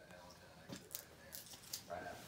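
Faint voices in the background with a few light, quick clicks and rattles, about four in the second half.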